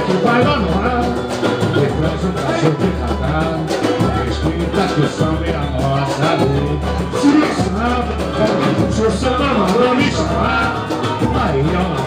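Live samba music: singing over a steady, deep repeating beat, loud throughout.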